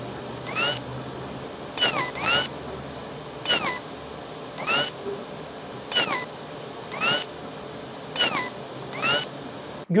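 Huawei Pura 70 Ultra's retractable main camera lens motor, making its mechanical opening and closing sound: about nine short whirring chirps, each rising and then falling in pitch, as the lens moves out and back. The sound is digitally amplified, so a steady hiss lies under it.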